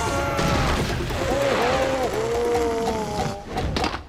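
Animated fight soundtrack: a character's long, wavering scream over music and crashing impact effects, cutting off abruptly near the end.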